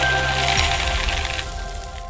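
Intro sound effect: a crashing, clattering burst that fades away over about two seconds, with the jingle's last notes ringing under it.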